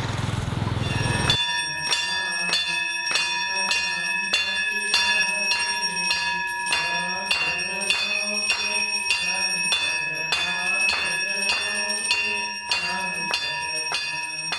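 Brass Hindu temple bell hanging overhead, rung by hand again and again at about two to three strikes a second, its ringing tones carrying on between strikes: the bell rung on entering the temple. It starts suddenly a little over a second in, after a moment of street noise.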